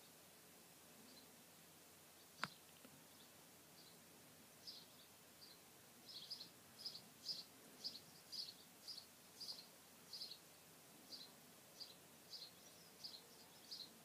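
Near silence with faint, high bird chirps, sparse at first and then about two a second in the second half. There is a single sharp click about two and a half seconds in.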